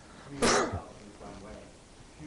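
A single short, loud cough-type burst from a person about half a second in, with faint, distant speech around it.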